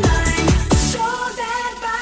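Electronic dance music played in a DJ mix. A pounding kick drum and bass line drop out about halfway through, leaving only the sustained synth melody.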